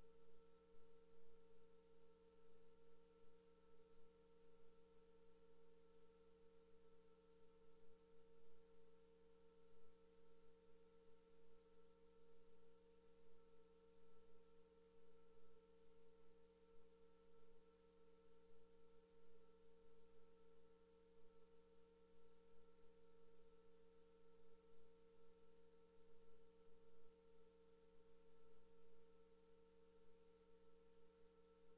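Near silence: a faint, steady electrical hum made of a few unchanging tones, with no other sound.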